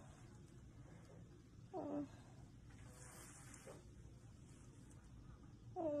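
A woman's short "uh, uh" of discomfort, falling in pitch, about two seconds in, with a nasal swab in her nose; otherwise quiet room tone.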